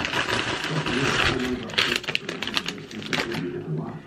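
Crinkling and rustling of a plastic mailer bag and paper being handled and rummaged through, a dense run of quick crackles.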